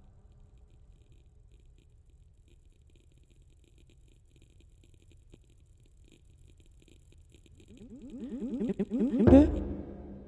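Percussion and electronics in a contemporary concert piece: a long stretch of faint low rumble with sparse soft clicks, then, about eight seconds in, a rapid pulsing buzz that rises in pitch and swells into one loud hit near the end, which rings away.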